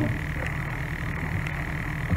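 Steady background buzz: an even high-pitched drone with a low hum beneath it.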